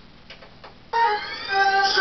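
A recorded pop song starts loudly about a second in, opening with a rising synth sweep over steady held notes.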